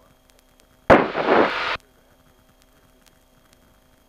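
Cockpit headset audio: a short loud burst of static-like noise opens with a sharp click about a second in and cuts off abruptly under a second later. Around it, a faint steady hum from the aircraft's engine.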